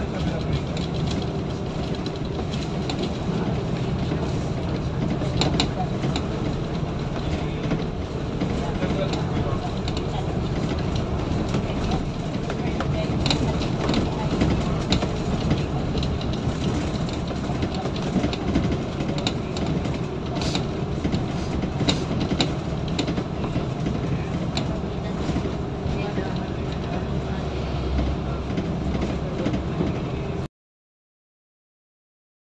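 Steady engine and tyre noise heard from inside a moving vehicle on the road, with scattered light clicks and rattles.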